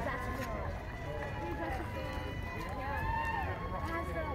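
Background voices of people talking nearby, fainter than a close speaker, over a steady low outdoor rumble.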